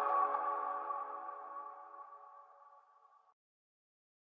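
Ringing tail of an intro logo sting's synthesized chord, several sustained tones fading away over about two seconds, then silence.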